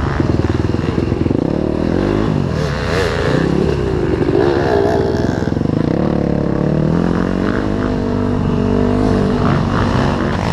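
Dirt bike engine running under load as it is ridden along a rough trail, its pitch rising and falling with the throttle.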